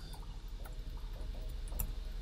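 Faint, irregular clicks of computer keyboard keys being typed, over a low steady hum.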